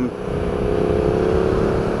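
Hyosung GT650R V-twin motorcycle engine running under way through an aftermarket exhaust, its note rising gently, under steady wind rush on the onboard camera's microphone.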